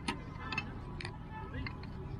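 Light clinks and ticks of small dishes being handled from a tray and set out, a few separate clicks over the course of two seconds.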